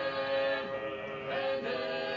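A small group of voices singing together in harmony, holding long notes.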